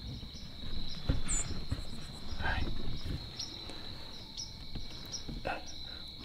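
A steady, high-pitched insect trill, with low rustling and handling noise beneath it.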